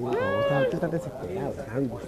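A woman's high voice drawing out one note that rises and falls for under a second, followed by quieter talk among the group.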